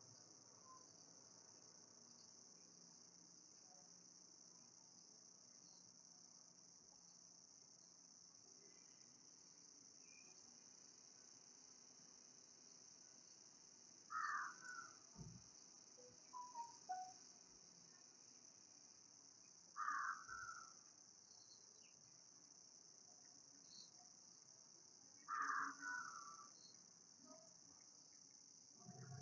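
Near silence: room tone with a faint steady high-pitched hiss, broken three times, about six seconds apart, by a brief faint chirp-like sound.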